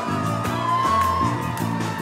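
Amplified pop music at a live concert: a bass line stepping between held notes under a steady beat, with one long sliding voice call over it about half a second in.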